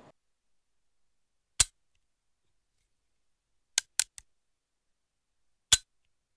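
Computer mouse clicks in otherwise dead silence: one sharp click about one and a half seconds in, a quick run of three around four seconds, and one more near the end.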